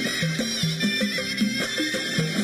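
Live Arabic orchestral music from a stage band, with a quick repeating bass figure under higher melodic lines.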